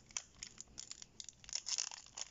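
Foil booster-pack wrapper crinkling and tearing as it is opened by hand, in quick irregular crackles that grow louder and denser near the end.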